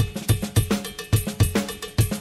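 Drum kit playing a steady rock beat with kick drum, snare and cowbell hits, in an instrumental stretch of a 1970s Southern rock recording.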